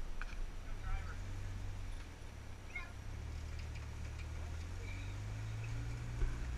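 Rock-crawling pickup truck's engine running low and steady as the truck creeps over boulders, heard from a distance. A few faint, short high calls sound over it.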